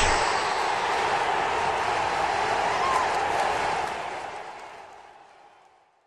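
The tail of the end-card sting: an even rushing noise, following a rising whoosh, holds steady for a few seconds, then fades out.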